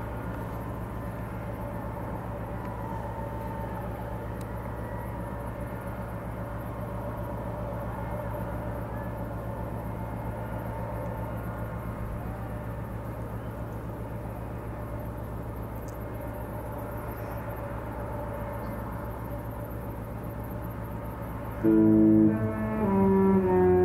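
Steady low hum of a large cruise ship under way, heard from a distance, with faint music drifting across from its decks. Loud orchestral music with brass and strings cuts in near the end.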